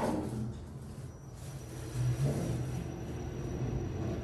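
Kone machine-room-less traction elevator car travelling down one floor: a low, steady rumble with a faint, thin high whine.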